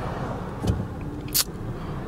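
Low, steady engine and road rumble inside a car's cabin, with a couple of brief clicks and knocks.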